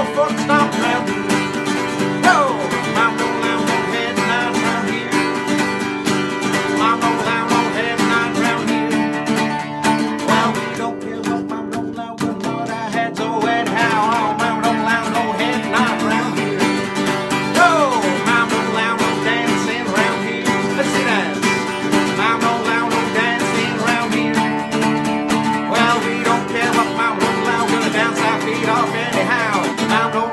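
Acoustic guitar strummed steadily in an upbeat country style, with a short lull about eleven seconds in.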